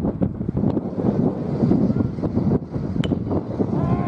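Wind buffeting the camera microphone throughout, with a single sharp ping of a bat hitting a pitched baseball about three seconds in.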